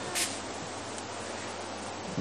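Faint steady background noise with a low hum, and a brief breathy hiss about a quarter second in.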